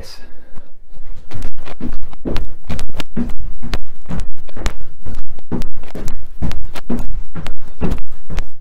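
Rapid two-footed jump landings in running shoes on a rug-covered wooden floor, about two to three thuds a second, as he jumps forward, back, centre and out to the sides at full plyometric speed.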